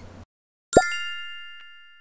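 Logo sound effect: a quick rising pop under a second in, then a bright bell-like ding that rings and fades over about a second and a half.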